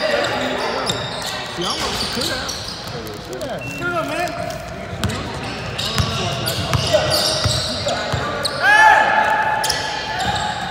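Basketball being dribbled on a hardwood gym floor, with sneakers squeaking and background voices echoing in the hall; a loud squeal stands out near the end.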